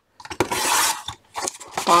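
Old sliding-blade paper trimmer cutting a sheet of thin paper: the blade carriage is pushed along its rail in one short scraping stroke of about half a second, with small clicks of the carriage before and after.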